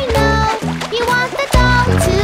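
Children's nursery-rhyme song with a steady beat and a sung line, and a cartoon water-splash sound effect.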